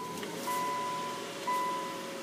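Car's dashboard warning chime dinging about once a second, each ding a clear steady tone that fades away, over a faint steady hum in the cabin.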